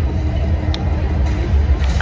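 Large indoor arena ambience: a steady low rumble with faint music and distant voices over it.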